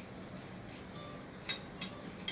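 A metal spoon clicking against a plate, twice in quick succession about a second and a half in, over a faint steady hum.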